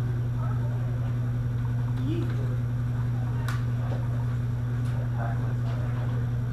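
Steady low hum in an emptying classroom, with faint distant voices and a few short clicks over it.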